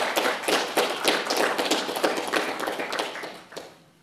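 Audience applause: many hands clapping, dying away near the end.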